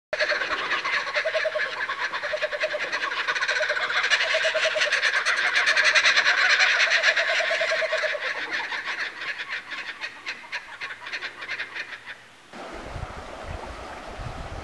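A group of birds chattering and calling together in a dense, busy chorus of rapid repeated notes, loudest midway and thinning out later. It cuts off abruptly near the end, leaving only faint low outdoor noise.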